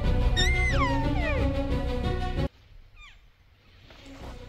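A loud cow-elk mew over background music, starting high and sliding steeply down in pitch. The music cuts off abruptly about two and a half seconds in, and a faint, short falling mew follows soon after.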